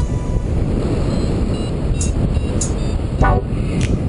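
Steady wind rush buffeting the microphone of a paraglider's camera in flight, with a brief pitched tone about three seconds in.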